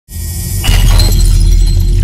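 Logo-intro sound effect: a deep bass rumble with a sudden glass-shattering crash about two-thirds of a second in, its glittering ring fading over the next second.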